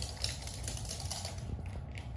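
Rapid light clicking of a small dog's claws on a hard floor as it trots about, over a steady low hum.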